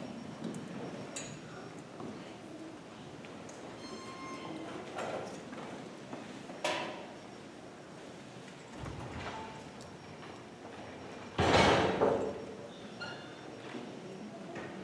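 Quiet hall between speech and music: scattered footsteps, shuffles and small knocks, with one sharp knock about halfway through and a louder, brief noise about eleven seconds in.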